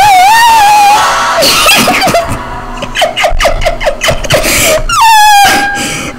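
Loud, strained singing by a young man, in held high notes that wobble in pitch, with a run of quick short notes in the middle.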